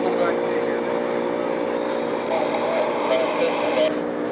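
An engine idling steadily, a constant even hum that does not rise or fall, with faint voices over it.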